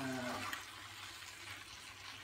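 Cabbage and jackfruit sizzling in a frying pan as they are stirred with a plastic spatula, a steady quiet hiss.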